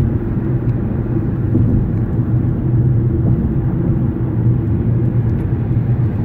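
Steady low rumble of road noise inside a moving car's cabin, driving on the bridge roadway.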